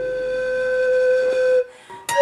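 Pan flute holding one long, steady note that stops about one and a half seconds in.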